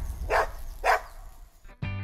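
A dog barks twice, short barks about half a second apart, over background music. The sound fades away near the end.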